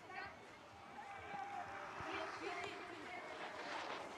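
Faint background voices talking, well below the commentary level, with no loud event.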